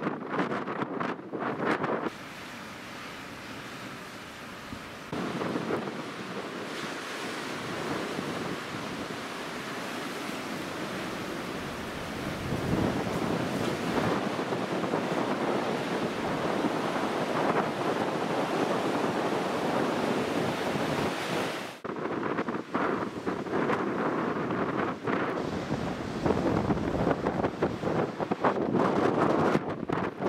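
Wind blowing across the microphone, a rushing noise with no tones in it that runs steadier through the middle and turns gusty and buffeting in the last third.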